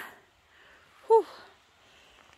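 A woman's short breathy "whew" exhale, falling in pitch, about a second in.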